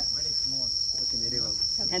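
A steady high-pitched shrill of insects that holds unbroken throughout, under people talking.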